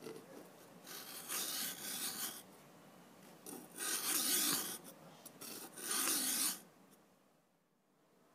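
A flat file drawn across the steel of a Solingen scissor blade held in a vise: three long scraping strokes with a short one between the last two, then stillness.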